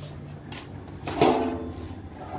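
Stainless steel tray's metal lid scraping as it is lifted open, one loud screech about a second in that fades quickly.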